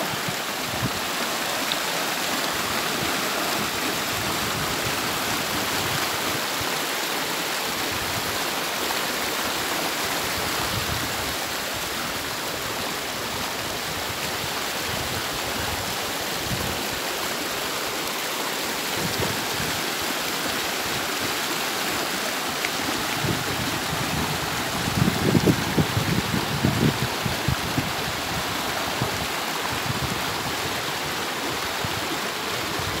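Steady rushing of a shallow, rocky mountain river flowing over stones. Near the end, a few seconds of louder, uneven low rumbling rise over it.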